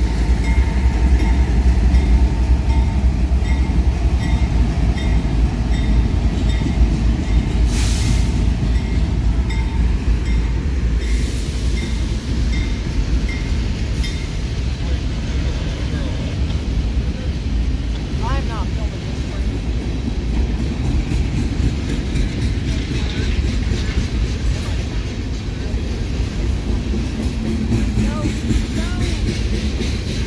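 A freight train's flatcars carrying containers rolling past close by: a loud, steady low rumble with wheel clatter on the rails. A faint ringing ding repeats roughly every half second through the first dozen seconds, then stops.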